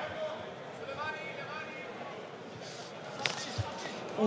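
Fight-arena ambience with faint shouting voices from the crowd or corners. About three seconds in comes a single sharp smack, a kick landing on a leg, followed by a short low thud.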